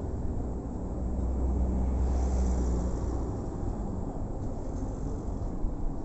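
City street traffic, with one vehicle passing close: its low hum swells about a second in and fades out after about three seconds.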